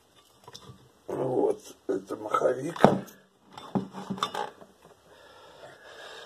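Indistinct speech in a small room, with a single sharp knock about three seconds in.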